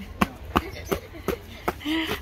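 A child's running footsteps on a paved path, about six even footfalls at roughly three a second.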